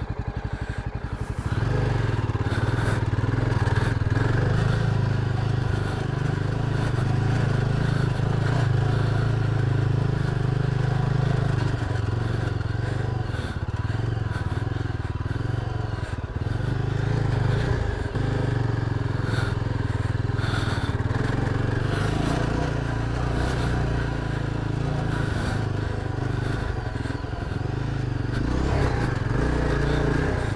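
Single-cylinder adventure motorcycle engine running under load on a rough dirt trail, a steady engine note that eases off briefly about six seconds in and again around the middle.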